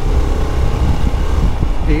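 Yamaha SZ single-cylinder motorcycle being ridden at a steady speed, its engine running under a heavy, uneven low rumble of wind on the rider-mounted microphone.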